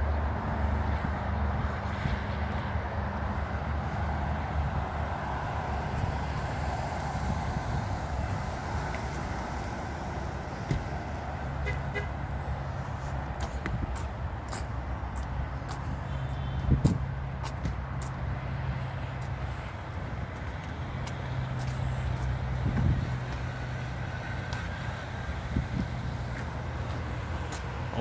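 Road traffic: car engines running with a steady low hum and road noise. A couple of brief knocks stand out, the sharpest about seventeen seconds in.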